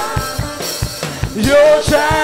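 Live church worship music: a band keeps a steady drum beat under a choir and lead singer, whose voices pause briefly and come back in near the end.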